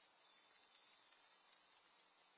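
Near silence: a faint steady hiss with a few tiny ticks.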